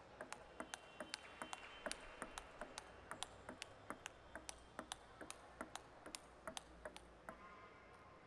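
Table tennis ball clicking back and forth off bats and table in a rally, about five to six sharp clicks a second, stopping shortly before the end.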